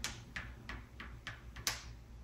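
Light clicks of a game piece set down and tapped along a board game's cardboard score track as points are counted: about six in two seconds, the sharpest one near the end.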